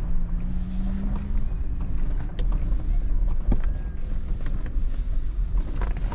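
Nissan Patrol with a 5.6-litre petrol V8 driving on beach sand, heard from inside the cabin: a steady low rumble of engine and running gear. A low engine tone rises slightly in the first second or so, and a couple of sharp knocks come in the middle.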